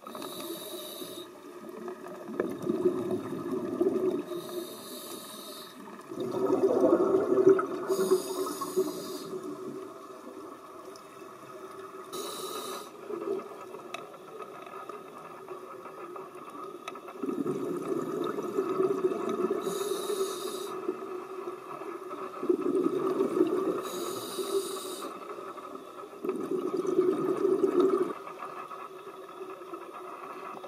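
Scuba diver breathing through a regulator underwater: short hissing inhalations alternate with longer rushes of exhaled bubbles, about five breaths, with a quieter pause mid-way.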